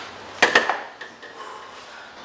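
A quick clatter of two or three sharp knocks on a wooden door about half a second in, as a resistance band and its door anchor are handled.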